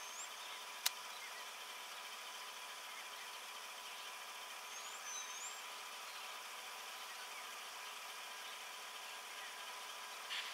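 Faint, steady outdoor background noise, with a single sharp click about a second in and a couple of faint high chirps around five seconds.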